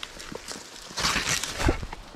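A climber scrambling up a steep forest slope by hand and foot: scuffing and rustling in leaf litter and undergrowth, with scattered knocks. It grows louder about a second in and ends with a dull thump as a grip or step lands.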